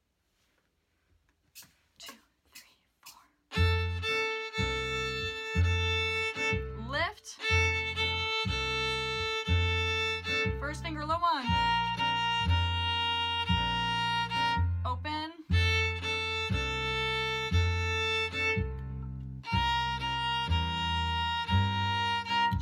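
A count-in of four clicks, then a backing track with a bass line playing beat by beat while a violin plays long, bowed, held notes along with it.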